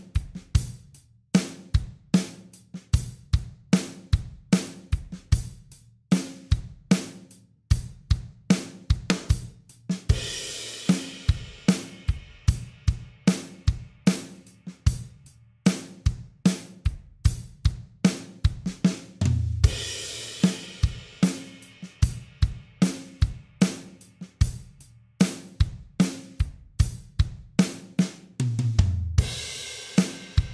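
Acoustic drum kit playing a steady groove in 3/4 at 75 BPM, with kick, snare and hi-hat. A cymbal crash rings out about a third of the way in, and two short fills on the low drums, about two-thirds of the way in and near the end, each lead into another crash.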